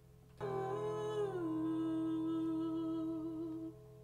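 A voice humming one held note in a quiet passage of a song. It comes in suddenly, slides down in pitch about a second in, wavers slightly and stops short near the end, over a faint steady low hum.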